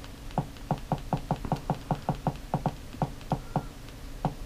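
Buttons on an Amazon Fire TV Stick remote clicking as they are pressed over and over to scroll down a menu list: a quick, uneven run of about twenty short clicks, several a second.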